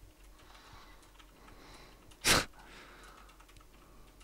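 Mostly quiet, with faint scattered clicks of typing on a computer keyboard and one short, louder puff of noise a little over two seconds in.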